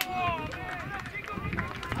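Several players' voices shouting and calling to each other across an open football pitch, overlapping, with a sharp knock at the very start.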